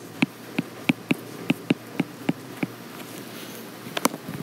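Stylus tip tapping on an iPad's glass screen while handwriting a word: about nine short, light ticks over the first three seconds, then a sharper click at the very end.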